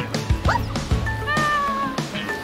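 Background music with a steady beat, over which a high animal call is heard: a short rising note about half a second in, then a longer whining note that falls slightly, like a cat's meow.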